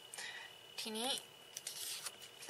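A sheet of paper rustling as it is lifted and moved: a short rustle near the start and a run of crackles near the end.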